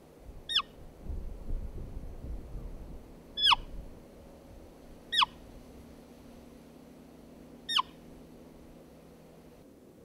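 Roe deer call blown by the hunter to imitate a doe's squeak: four short, high calls, each sliding quickly downward, a few seconds apart. A low rumble comes between the first two calls.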